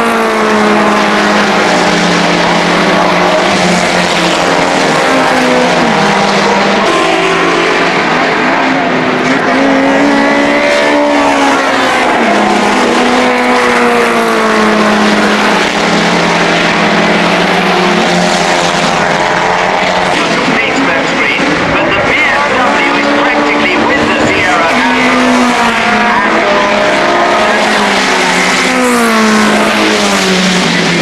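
Racing touring cars' engines running hard as a stream of cars laps past, the pitch stepping up and down with gear changes and falling away as each car goes by.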